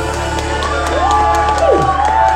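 Live music ending on a held chord, with audience whoops and cheers over it from about a second in: long voice glides that rise, hold, then drop.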